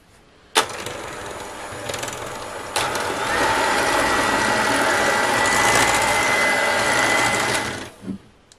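Handheld electric mixer switching on about half a second in and running steadily, its beaters whipping eggs and sugar in a glass bowl until fluffy and pale. It gets louder about three seconds in, with a steady high whine over the motor, and cuts off just before the end.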